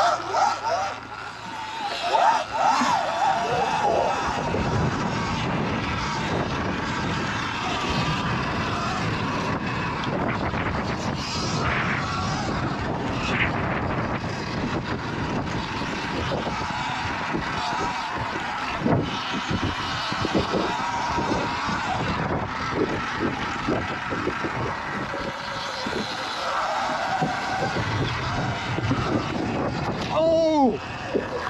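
An electric dirt bike being ridden over a dirt and grass track: steady wind rush buffeting the microphone, with tyre and drivetrain noise and knocks from the rough ground, and no engine note.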